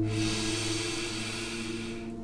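A long audible breath, a soft hiss that fades away over about two seconds, over quiet background music with held tones.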